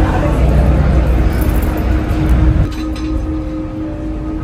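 Low rumble of a motor vehicle passing close by, dropping away about two and a half seconds in, with a steady hum underneath.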